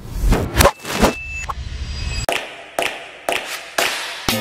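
A car engine starting up: a burst of noise, then a low steady rumble that cuts off abruptly about two seconds in, followed by a few sharp knocks.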